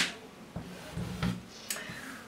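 Faint handling noise, with a couple of small sharp clicks, from hands working a tape measure and tailor's chalk on folded cloth.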